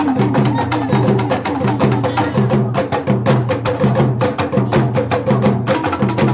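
Dance music driven by rapid drum strokes, with a repeating low pitched pattern underneath.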